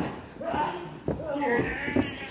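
Men's strained shouts and grunts while two wrestlers grapple, each cry wavering in pitch, with a sharp smack near the end.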